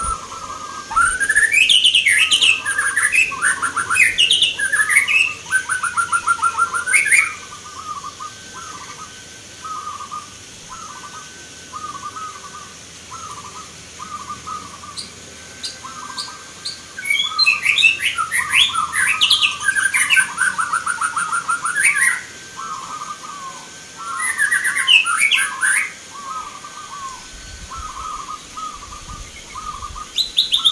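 Zebra doves (perkutut) singing a run of short, evenly repeated cooing notes. Three times, louder, quicker chattering and trilling birdsong breaks in over them: once at the start for several seconds, then twice in the second half.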